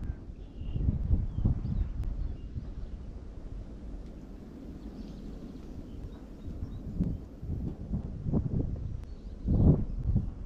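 Wind rumbling on the microphone, with irregular hollow knocks of footsteps on a wooden boardwalk and a louder thump near the end.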